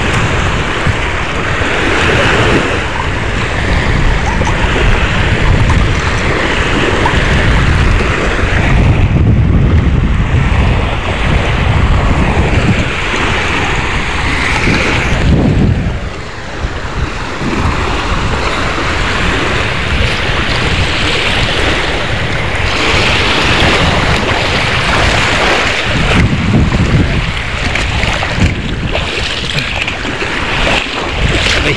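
Small waves breaking and washing over a pebble shore, with wind rumbling on the microphone throughout and briefly easing about halfway through.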